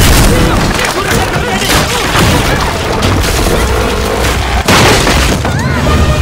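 Loud film action-scene sound mix: a crowd shouting over heavy low booms and sharp crashes, the biggest crash about five seconds in, with music underneath.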